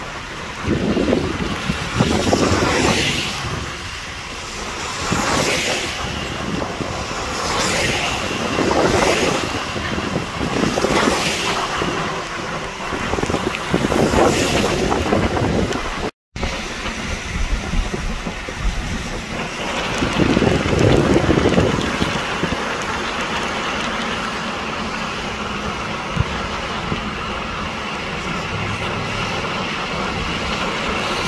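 Car tyres hissing on a rain-soaked road, heard from a moving car, with a louder wash of spray swelling every couple of seconds in the first half. The sound cuts out for a moment about halfway, then goes on as a steadier hiss with one more swell.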